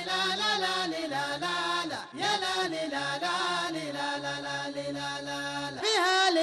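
Gulf-style sheilah chant: voices hold long, wavering notes over a steady, layered vocal drone, with a brief break about two seconds in.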